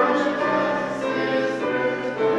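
Choral singing of a hymn, voices holding notes that change about every half second.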